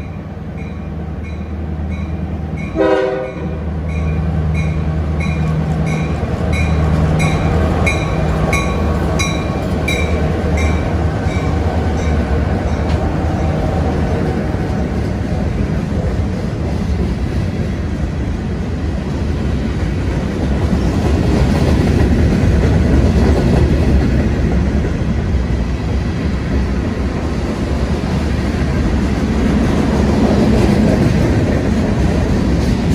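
Norfolk Southern freight train passing close by: its diesel locomotives drone while a bell rings steadily, with one short horn blast about three seconds in. The bell and engine fade out of the mix, and covered hopper cars roll past with a steady rumble and clatter of steel wheels on the rails that grows louder toward the end.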